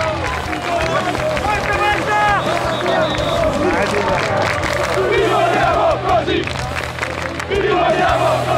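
A football ultras crowd in the stands chanting and shouting together, with many voices overlapping.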